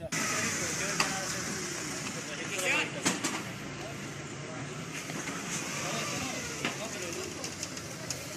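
Faint, indistinct voices over a steady rushing noise, with a few sharp clicks, in the rough audio of a phone recording.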